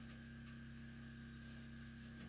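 Faint rubbing strokes of hands working over the top of a wood stove, over a steady background hum.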